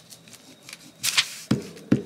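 A glue stick rubbed across magazine paper, giving a short scratchy swipe about a second in, followed by two sharp knocks of the stick or paper against the table.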